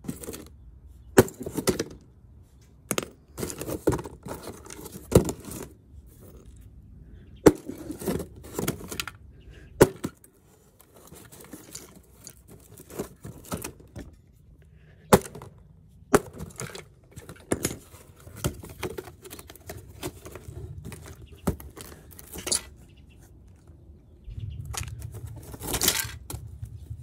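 Claw hammer striking a cardboard box that holds a wireless camera kit, in a dozen or more sharp irregular blows with crunching and rattling of broken plastic between them. Near the end the box is handled and rustles.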